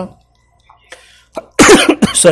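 A man coughs once, loud and sudden, about a second and a half in, after a short pause in his speech.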